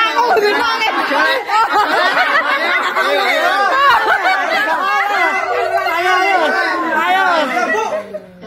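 Lively chatter of many voices talking and calling out over one another, with a call of "ayo" ("come on") rising out of it.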